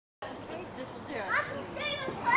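Young children's voices in play: a couple of short, high-pitched calls that get louder near the end, over faint background sound.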